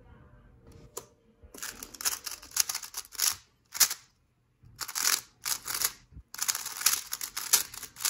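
A 3x3 speed cube being turned very fast during a timed solve: rapid plastic clicking and clacking of the layers in quick spurts, with a few short pauses between bursts of turns.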